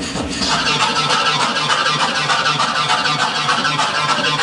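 Loud, harsh electronic music played from vinyl turntables in a DJ set, with a dense, grinding noisy texture and a fast, steady low pulse.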